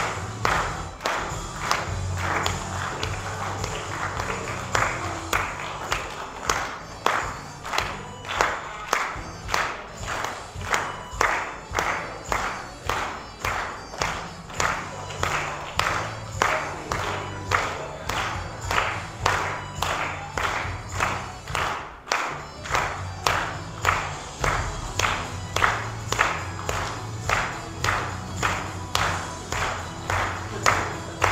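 Upbeat music with a steady beat, about two beats a second.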